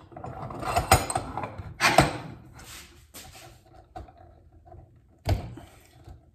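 Knipex Cobra pump pliers being fitted and worked on a black plastic pipe fitting clamped in a bench vise: metal jaws clacking and scraping against the fitting, with sharp knocks about one and two seconds in and again near the end.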